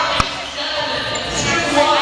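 One sharp thud of a ball hitting the hardwood gym floor about a quarter of a second in, over the voices of players in the gym.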